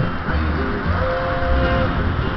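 Flatpicked bluegrass rhythm on a Fender Malibu acoustic guitar, with low bass notes about twice a second. A single held note comes in about a second in and lasts under a second.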